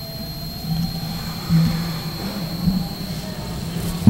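Steady background hum and hiss of a microphone and PA system, with a thin, steady high-pitched whine that cuts out near the end.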